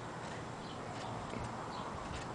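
Outdoor background hiss with faint, short high chirps several times over.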